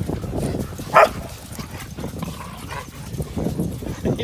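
Dogs playing rough, with one short, sharp bark about a second in.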